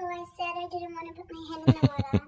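A young woman's high voice singing a short phrase on a steady pitch, then breaking into laughter about a second and a half in, in quick short bursts.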